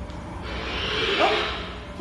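Whoosh sound effect from an interactive floor projection's soundscape, set off by footsteps on the floor. It swells for about a second, with a short rising tone at its peak, and then fades.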